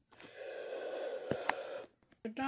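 A person's breath blown out steadily for nearly two seconds, with two small clicks near the end.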